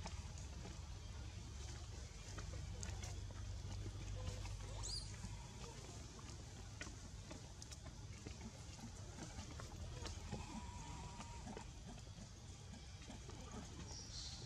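Faint outdoor ambience: a steady low rumble with scattered soft clicks and rustles, a brief high chirp about five seconds in, and a thin faint call held for about a second near the ten-second mark.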